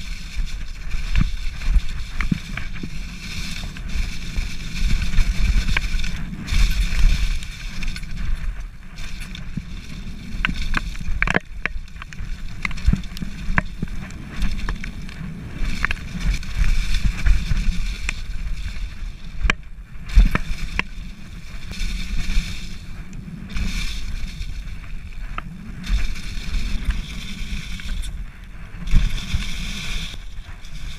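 Downhill mountain bike ridden fast over a leaf-covered dirt trail: a steady low rumble of wind and ground noise on the camera microphone, with tyres running through dry leaves and the bike rattling in frequent sharp clicks and knocks over the bumps.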